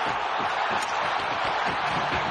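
Hockey arena crowd noise, a steady din from the crowd reacting to a goal being waved off.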